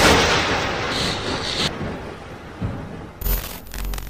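Logo-intro sound effect: a sudden loud hit opening into a long noisy wash that slowly fades, then a second burst of noise with a thin high tone over it about three seconds in.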